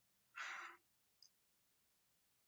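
A short breath out into the microphone, about half a second long, followed a moment later by a faint single click; otherwise near silence.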